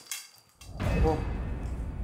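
A low rumble starts suddenly about half a second in and carries on steadily, with a brief 'uh' from a man.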